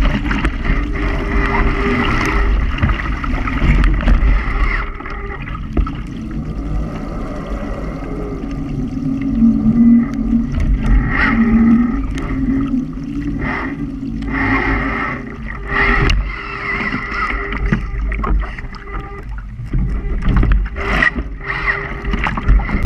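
Water rushing and splashing along the hull of a radio-controlled Mini40 trimaran sailing fast, heard from a camera mounted on its deck, with wind buffeting the microphone. The noise surges and eases with the gusts.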